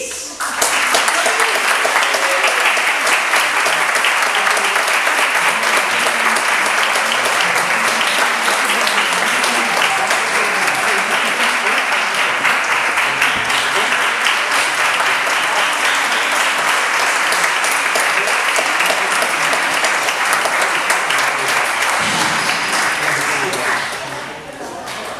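Audience applauding: dense, steady clapping that starts about half a second in, holds level, and dies down at the very end.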